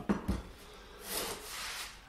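A cast-iron hand plane sliding across a wooden bench top, a scraping rub of about a second in the second half.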